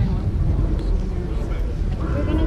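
Indistinct voices of people talking close to the microphone, with no clear words, over a steady low rumble.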